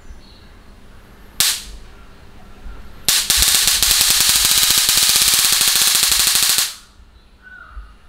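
High-voltage booster module, sold as a 40,000 V generator and run from a single battery cell, arcing across its output wires. There is a brief spark about a second and a half in, then a continuous rapid crackle of sparks for about three and a half seconds that cuts off suddenly.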